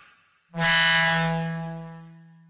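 Reveal Sound Spire software synthesizer previewing a preset: a single low, buzzy held note starts about half a second in and slowly fades.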